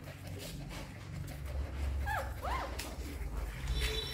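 Newborn puppies crying while they nurse: two short high squeaks, each rising and then falling in pitch, about two seconds in, over a low steady rumble.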